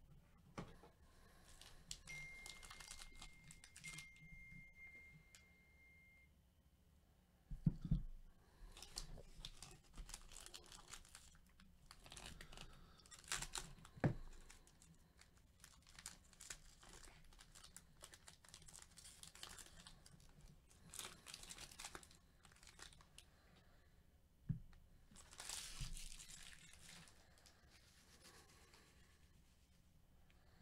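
Foil wrapper of a hockey card pack crinkling and tearing as it is opened, in uneven bursts of rustling, with a few sharp knocks from handling.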